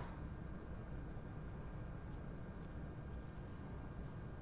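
Quiet room tone: a steady low hum with no distinct sound events.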